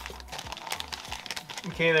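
Clear plastic accessory bag crinkling and rustling as it is handled in the fingers, with rapid small crackles throughout.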